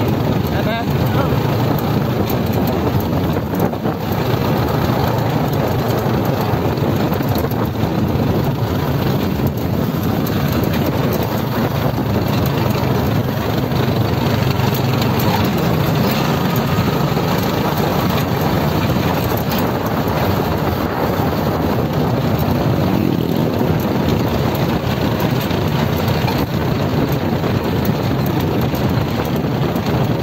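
Motorcycle engine running steadily as it rides along a road, a continuous low drone with road and wind noise.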